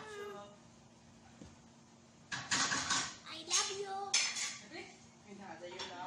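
Dishes and pots clattering on a kitchen counter, loudest in a run of sharp clatter from about two to four and a half seconds in. A child's high voice is heard briefly at the start.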